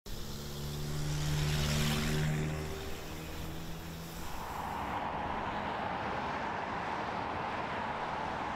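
Street traffic: a vehicle's engine drone swells and passes in the first few seconds, then fades into a steady city hum.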